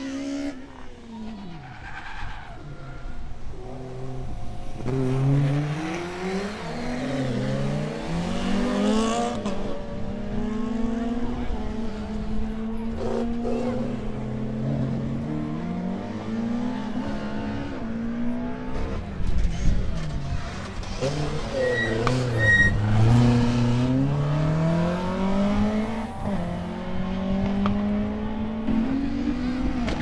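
Rally car engine revving hard, its pitch climbing and dropping again and again through gear changes and corners, loudest about twenty seconds in.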